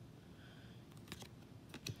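Faint clicks and light taps of trading cards being handled and set down on a card stack on a wooden table, a few quick clicks in the second half.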